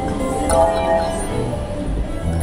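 Slot machine game audio: steady jingly music with clinking chimes as a win tallies up on tumbling reels, a bright chime standing out about half a second in.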